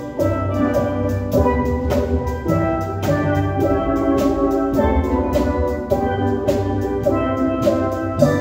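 Steel band playing a tune: melody notes struck on chrome steel pans with rubber-tipped sticks over low bass pans, with a drum kit keeping a steady beat.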